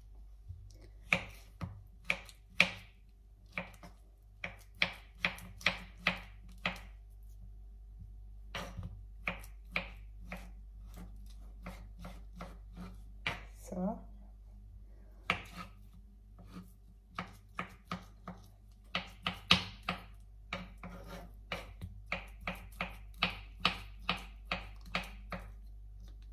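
Small kitchen knife slicing peeled potatoes on a wooden cutting board, the blade tapping the board with each cut in irregular runs of quick taps with short pauses between.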